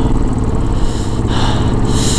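Motorcycle engine running steadily under way, with wind rushing over the microphone in gusts.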